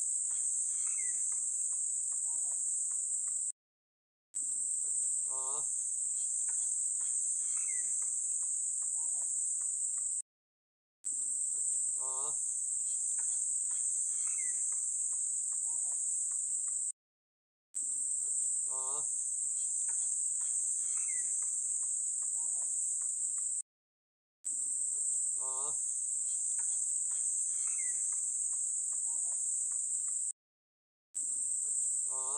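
Steady, high-pitched chirring of an insect chorus, the loudest sound throughout, with faint short calls and a small falling chirp underneath. The sound cuts out completely for under a second about every seven seconds, and each time the same stretch starts over, as in a looped recording.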